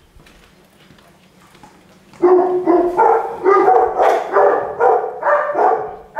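Large dogs barking excitedly at a visitor's arrival, a fast run of loud barks at about two to three a second starting about two seconds in.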